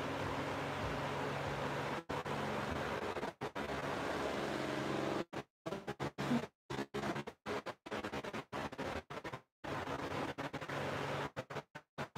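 Steady hiss of room noise with a faint low hum, cut by brief dead-silent dropouts: a few in the first five seconds, then many short ones in quick succession.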